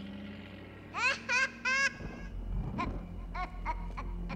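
A man laughing in three short high-pitched bursts about a second in, then a few fainter breathy laughs over a low rumble.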